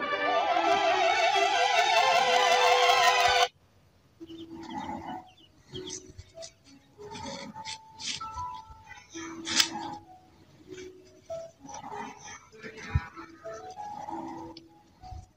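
High operatic singing with a wide vibrato that cuts off suddenly about three and a half seconds in. After it comes a quieter scatter of short, broken-off tones, clicks and fragments of sound clips, with one sharp click in the middle and a thump near the end.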